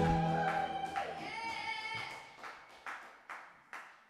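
The last chord of a song's backing music dies away and a voice briefly calls out. Then come a few sharp claps, about two a second, growing fainter.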